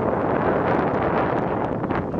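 Wind buffeting the microphone of a camera riding in a moving golf cart: a steady, loud rushing rumble.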